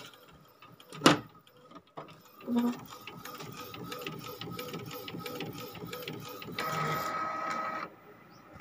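Epson L805 inkjet printer printing a sheet. A sharp click comes about a second in, then the print mechanism runs steadily with a quick even ticking. It turns louder, with a whine, near the end as the printed sheet comes out, and cuts off suddenly.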